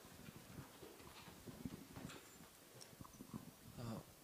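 Faint footsteps and small knocks in an otherwise quiet room, as someone walks across it.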